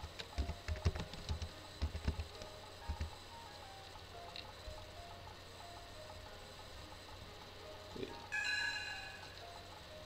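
Computer keyboard typing in quick clicks over the first three seconds, over faint background music. About eight seconds in, a short computer alert chime sounds as a file-replace warning box appears.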